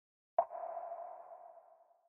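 Logo sound effect: a single sharp struck tone about half a second in that rings on at one pitch and fades away over about a second.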